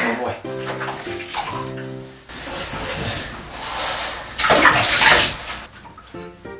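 Water running and splashing in a bathtub while a dog is bathed, loudest about a second before the end, over background music that holds steady notes in the first two seconds.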